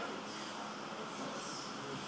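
Steady background hiss of a hall with two faint, soft rustles of gi and hakama cloth as two people rise from kneeling on the mat.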